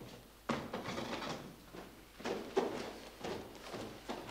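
Scuffling and shuffling as a man takes hold of an old man and hauls him along, in two noisy stretches that start suddenly about half a second in and again about two seconds in.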